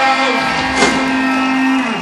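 Live rock band's final note held on amplified guitars, a steady sustained tone that cuts off just before the end, with one sharp hit a little under a second in.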